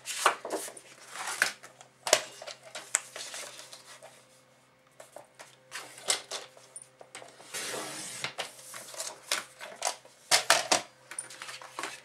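Paper-craft handling of white cardstock with a Fiskars sliding paper trimmer: scattered taps and clicks as the sheet and trimmer are moved on the cutting mat, then a longer rasping slide about two-thirds of the way through as the trimmer blade cuts the card, followed by a few more clicks.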